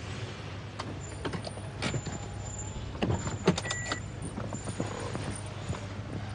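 A car engine idling with a steady low hum, with a few clicks and knocks about a second in and a cluster of them around three to four seconds in.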